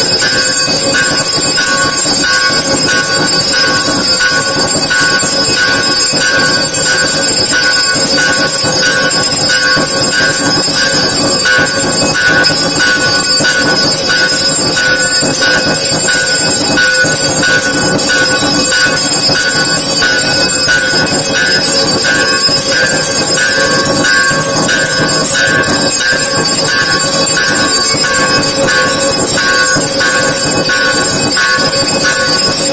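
Temple bells ringing without a break during the arati lamp offering: a loud, steady metallic clangour with many ringing tones that neither stops nor changes.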